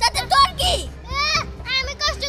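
A woman and a girl shouting and shrieking at each other in high-pitched voices as they scuffle, over background music.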